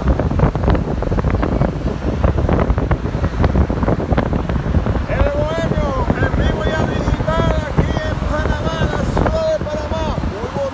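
Wind rushing over the microphone at a car's side window, with road rumble from the moving car. Indistinct voices in the car, clearest in the second half.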